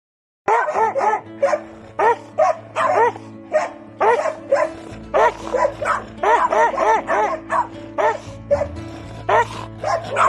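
A dog barking over and over, about two to three barks a second, each bark rising and falling in pitch, starting about half a second in. Steady background music runs underneath.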